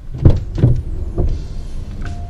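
A car's rear door being opened from outside, heard from inside the cabin: a few knocks and clicks from the handle, latch and door, the loudest about a quarter second in.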